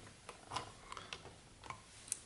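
A few faint, irregular plastic clicks and taps as small coloured caps are handled and pushed onto the LED sockets of a 3D-printed switchboard.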